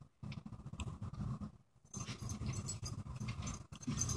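Faint, irregular gulping and gurgling as Diet Coke is drunk straight from the bottle with Mentos held in the mouth.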